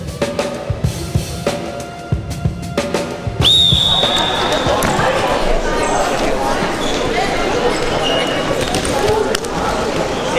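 Drum beats of intro music, then a high whistle blast about three and a half seconds in lasting about a second, followed by the busy din of a sports hall full of voices.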